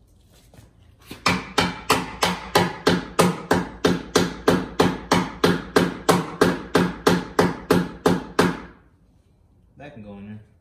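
A steady run of about two dozen even knocks, a little over three a second, each with a short low ring. They start about a second in and stop before nine seconds.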